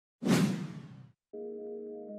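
A whoosh sound effect that hits sharply and fades out within about a second, followed by soft background music of held keyboard chords.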